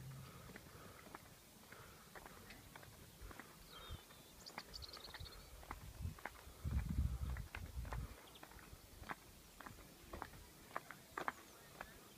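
Faint, irregular footsteps, tapping unevenly throughout, with a brief high chirp about four seconds in and a short low rumble around seven seconds.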